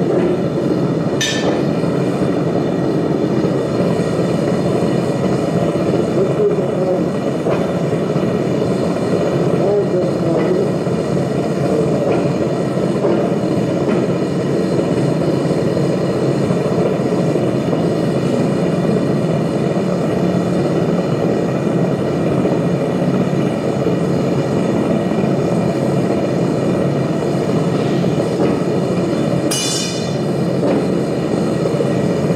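Propane-fired foundry furnace burner running with a steady, constant rush of flame. A brief high-pitched ring cuts through it about a second in and again just before the end.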